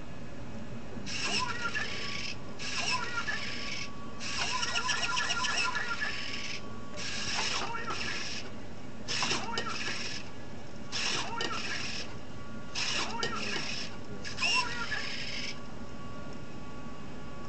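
Humanoid robot speaking through a small onboard speaker: about eight short voice phrases with pauses between them, thin and tinny.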